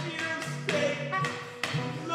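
Melodica played live, holding reedy notes and moving between pitches. Sharp percussive hits land over it at uneven intervals.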